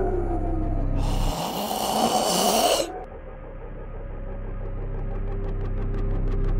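A boy coughing: one long, noisy cough in the first few seconds. After it comes a low steady drone with a single held tone that slowly grows louder.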